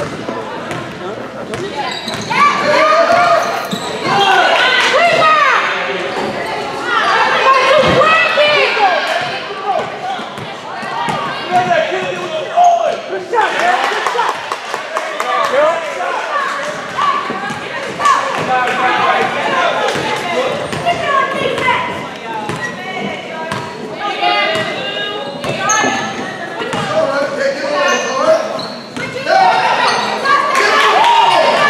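Basketball game sounds in an echoing gym: the ball being dribbled on a hardwood court amid players' running feet. Voices of players and spectators call out throughout.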